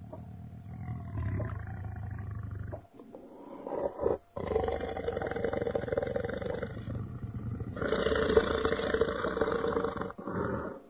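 Dinosaur roar sound effects: rough, drawn-out roars and growls with short breaks about three and four seconds in, then running on and loudest over the last two seconds.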